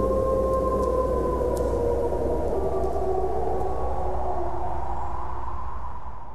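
A pack of wolves howling in long, overlapping sliding notes over a steady low drone, starting to fade near the end.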